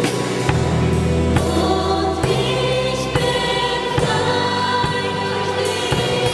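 Live church band playing a worship song: women singing over drum kit and keyboard, with steady drum hits throughout.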